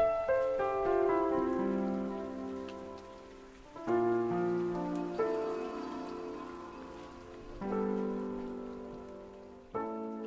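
Soft piano chords and arpeggios, a new group of notes struck every two to four seconds and left to ring and fade, over a faint rain-like patter.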